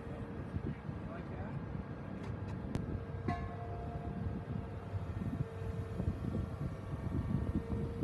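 Tracked excavator's diesel engine running steadily, a low rumble with a held tone; a click and a second, higher tone join about three seconds in as the machine handles the lifted spreader.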